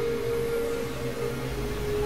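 Synthesizer drone: one steady, held mid-high tone over a hissy, noisy wash. A deeper low drone swells in about one and a half seconds in.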